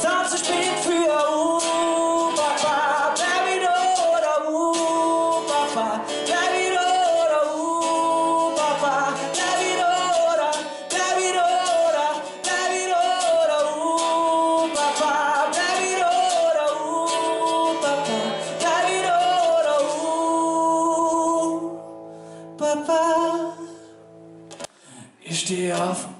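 Live acoustic song: a male voice sings a repeating melodic phrase over a strummed acoustic guitar. The singing stops about two-thirds of the way through, the music drops low for a few seconds, and strumming starts again near the end.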